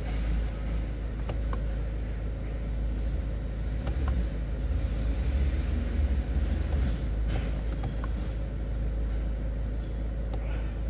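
2012 Ford Focus 2.0-litre four-cylinder turbodiesel idling steadily, a low rumble heard from inside the cabin, with a few light clicks over it.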